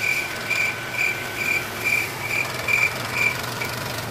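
A small paddy thresher running with a steady hum, its drum threshing straw fed in by hand. Over the hum, a short high chirp repeats a little over twice a second.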